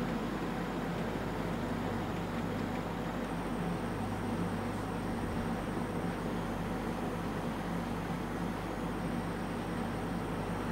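Steady room tone: an even background hiss with a low steady hum underneath, and no distinct events.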